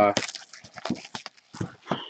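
Cardboard hobby boxes of trading cards being handled and shifted: a quick run of light clicks and knocks.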